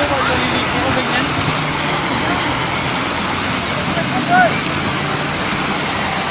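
Steady rushing noise of surf and wind on a beach, even in level throughout, with faint distant voices now and then.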